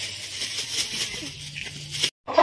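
Thin plastic bag rustling and crinkling in short, uneven bursts as it is handled.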